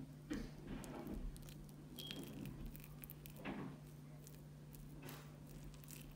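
Faint, soft squishes and scrapes of a metal fork working through mashed potatoes in a wooden bowl, with a few scattered light ticks, over a steady low hum.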